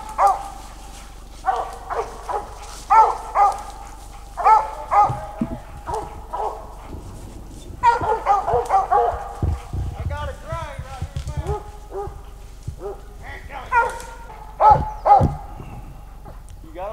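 Squirrel dog barking in short, repeated bunches at a tree where it has treed a squirrel, the barks coming fastest about halfway through.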